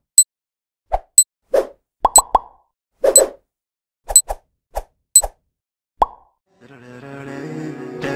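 A string of short cartoon pop and click sound effects on an animated countdown, about two a second, some coming in quick pairs or threes. About two-thirds of the way in, music fades in and swells.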